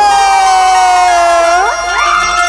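A singer holding one long note on "jai" in a Chhattisgarhi jas devotional song, the pitch sinking slowly, then swooping sharply upward near the end.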